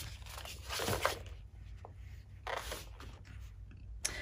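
Faint handling noise from a boxed set of plastic acrylic paint bottles being slid across a cloth-covered table and picked up: two soft scuffs, about a second in and again near three seconds, with a small click between them.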